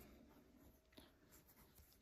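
Near silence with faint rustling of cord being worked on a metal crochet hook, and one soft tick about halfway through.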